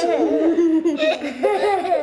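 A man and young children laughing together.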